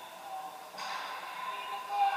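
Ice rink ambience during a stoppage in play: distant players' voices calling out, with one sharp knock about three-quarters of a second in.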